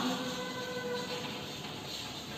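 A horn's steady note with several overtones, trailing off and fading out about a second in.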